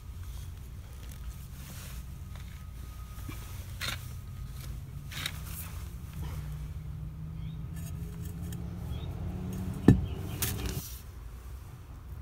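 Light handling and scraping sounds as a metal pipe is worked into damp soil, with one sharp knock a couple of seconds before the end, over a steady low background hum.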